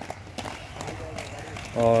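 Light, rhythmic steps at an outdoor track, with faint distant voices. A man's voice comes in close near the end.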